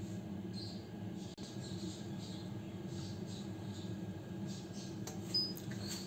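Cecotec Mambo cooking robot humming steadily as it heats its bowl at 100 degrees with the blades stopped.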